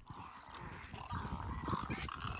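Faint calls from a flock of wading birds, great egrets and roseate spoonbills, over a low, uneven rumble.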